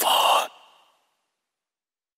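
A short breathy vocal sound, like an exhaled sigh, closing the rap track with no beat under it; it fades out within about half a second and is followed by silence.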